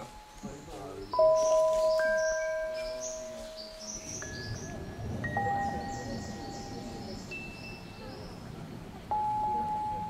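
Chime tones at different pitches, struck one at a time, about seven strikes. Each is a clear single note ringing on for a second or more. The loudest comes about a second in.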